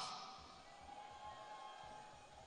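The tail of a man's shouted voice fades out at the start, then near silence with only a faint steady background.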